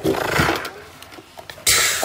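Rustling and handling noise close to the microphone as hands grab and lift a plastic costume helmet: one burst at the start and a louder hissing rub near the end.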